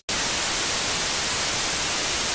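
Television static: a steady, even hiss of white noise, starting abruptly right after a split-second dropout.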